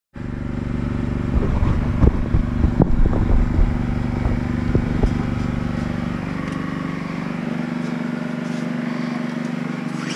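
A steady low mechanical hum. In the first five seconds it is overlaid by rumbling and a run of sharp knocks as the head-worn camera is moved about.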